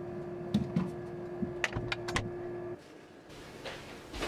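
Handling noise from a small plastic container: a few sharp clicks and knocks, the loudest in a quick cluster about halfway through. They sit over a steady hum that cuts off suddenly near the end.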